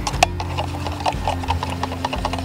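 A thin stick stirring insecticide into water in a small plastic cup, its tip ticking quickly and evenly against the cup's sides.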